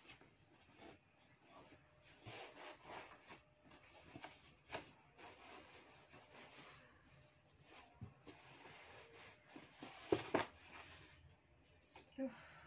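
Faint rustling, rubbing and light knocks as items are handled and arranged inside a large cardboard box, with a louder cluster of knocks about ten seconds in.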